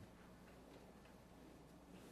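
Near silence: room tone with a low hum and a few faint ticks.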